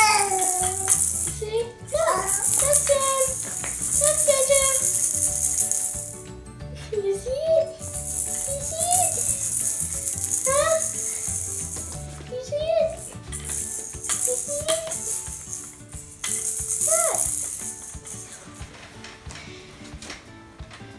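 A plastic baby toy rattle shaken in several bursts, with short rising vocal sounds, a baby babbling, in between.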